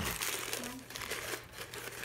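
Gift wrapping paper crinkling and rustling in hands as a present is opened, a dense run of small crackles.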